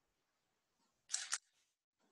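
Near silence broken about a second in by one short, sharp double click-like noise.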